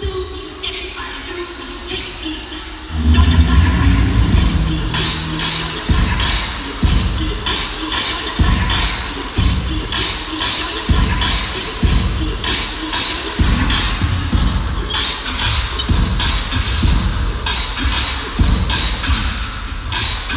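Hip-hop dance track played over loudspeakers in a large hall. It is quiet for about three seconds, then a heavy bass beat kicks in, with kicks a little under a second apart.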